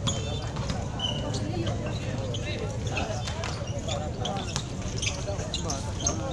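Basketball bouncing on an outdoor concrete court during a game, with short sharp impacts scattered through, under steady chatter and shouts from the watching crowd.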